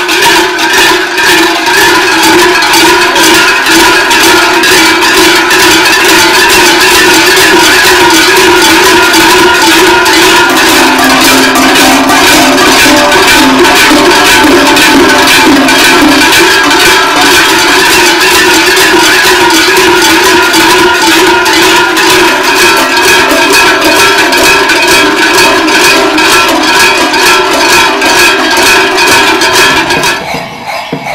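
Many large sheet-metal cowbells, worn in rows around masked carnival figures' waists, clanging loudly and without pause as the wearers move, several pitches ringing together in a dense jangle. A lower bell tone stands out for a few seconds near the middle.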